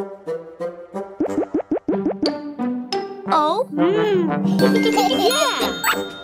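Children's cartoon music with playful sound effects: short plucked notes and springy, boing-like pitch sweeps, then a bright chiming jingle near the end.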